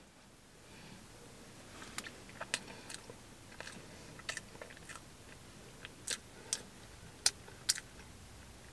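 A person chewing a bite of soft sponge cupcake with the mouth closed: faint, irregular little mouth clicks and smacks, starting about a second in.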